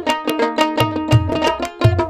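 Dotora, the long-necked plucked folk lute of Bengal, playing a quick melody over steady strokes of a dhol barrel drum, in a Bhawaiya folk instrumental passage.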